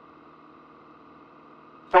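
Faint, steady hum of a light airplane's engine and propeller in level flight, muffled as heard through a cockpit headset intercom. A man's voice starts right at the end.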